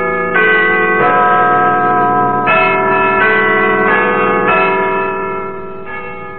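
Large tower bells chiming a slow tune, a new bell struck about every second and each left ringing on into the next. The sound is thin and dull, as on an old narrow-band radio recording.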